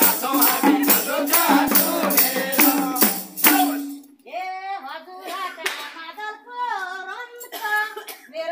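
Madal hand drums and handclaps keep about four beats a second under group singing of a Deusi-Bhailo song. The drumming cuts off about three and a half seconds in, and a single voice then sings on alone.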